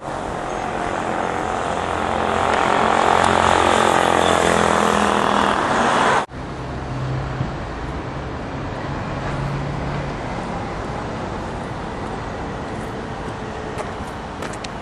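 Street traffic: a motor vehicle passing close, its noise building to a peak, cut off suddenly about six seconds in and followed by steadier road traffic.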